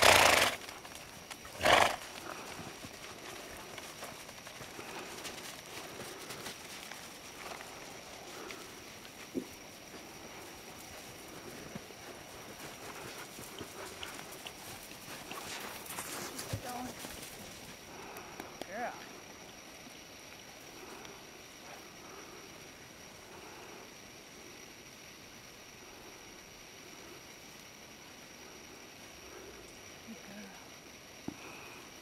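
A horse walking on snow-covered ground, its footfalls faint and muffled. Two loud, short, noisy bursts near the start, about two seconds apart, are the loudest sounds.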